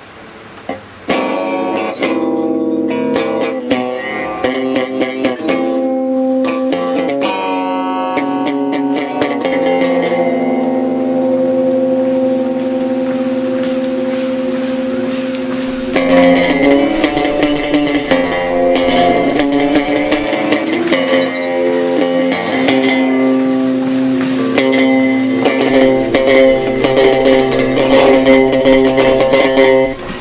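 An electric guitar being played: it comes in about a second in with a few notes, holds long sustained notes, then gets louder and busier with quicker plucked notes from about halfway.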